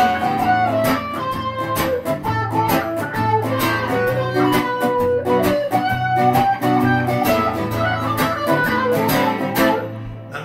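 A Stratocaster-style electric guitar and a strummed acoustic-electric guitar playing together in an instrumental passage: a single-note melody line moves over steady, even strumming, with no singing.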